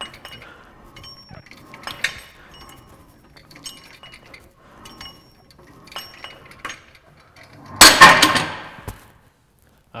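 Metal dip station clinking and rattling under a man's repeated bodyweight dips, light metallic clinks every second or two. About eight seconds in, a loud, brief burst of noise.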